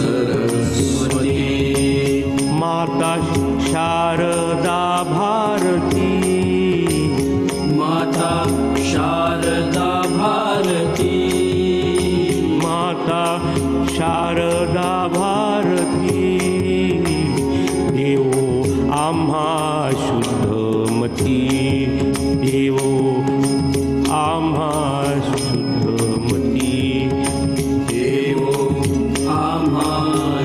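A Marathi devotional abhang in praise of Ganesha, sung by a single voice over a steady drone, with light ticking percussion keeping time.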